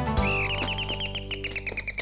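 Closing bars of a sitcom's bumper jingle: a held low chord under a fast, bird-like chirping trill, about ten chirps a second, that rises briefly and then slowly falls in pitch.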